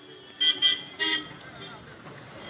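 Vehicle horns giving three short toots within about the first second, over the voices of a waiting crowd.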